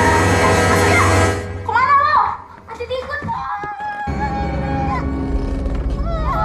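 A woman's voice howling like a wolf: a long high howl that breaks off about a second in, short rising-and-falling howls, then after a brief pause another long, quieter held howl.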